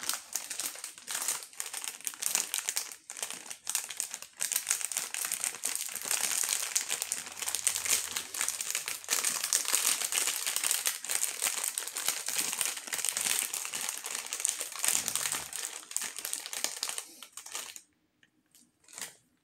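A plastic foil Hot Wheels Mystery Models blind bag being handled and squeezed in the hand, crinkling continuously, then stopping abruptly near the end.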